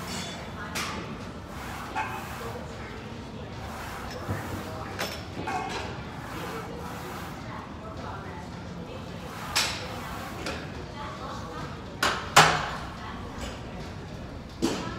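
Background of a large gym: a murmur of distant voices and room noise with scattered sharp clanks and knocks of equipment, the loudest two a little after twelve seconds.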